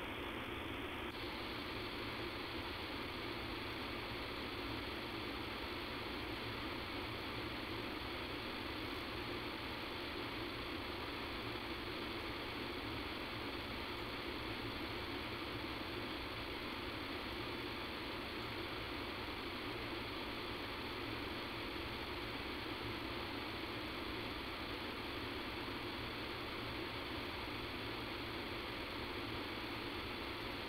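Steady hiss of a telephone conference-call line with no voices, from a recording whose sound quality is faulty. The hiss widens slightly in pitch range about a second in.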